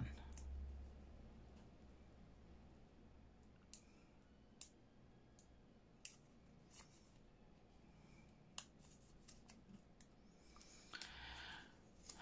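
Faint, scattered clicks of fingernails picking at a small paper sticker to peel off its backing, about six sharp ticks spread over several seconds in near-silence, with a brief soft rustle near the end.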